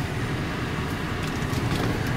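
Cabin sound of a 2012 Volkswagen Eos with its 2.0-litre turbocharged four-cylinder running at low revs and the air-conditioning blower on: a steady low rumble under an even hiss.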